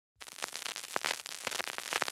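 Vinyl record surface noise: a stylus riding the groove gives a dense, irregular crackle of pops and clicks over a hiss, starting about a fifth of a second in.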